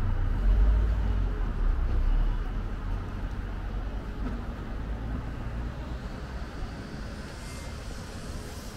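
Low rumble of town street traffic, with a car waiting at the lights ahead. It is loudest in the first two seconds, then fades to a quieter steady background.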